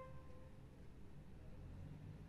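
The tail of a held flute note fading out in the first instant, then near silence: room tone.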